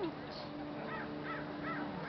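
Faint bird calls: a short run of about four similar rising-and-falling notes, evenly spaced, over a low background murmur.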